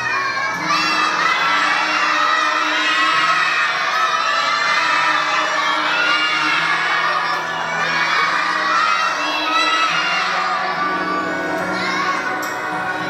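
A large group of young children shouting and cheering together, with music playing underneath.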